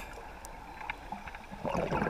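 Muffled underwater sound picked up by a camera in its waterproof housing: faint clicks at first, then about one and a half seconds in a louder crackling, bubbling rush of water sets in.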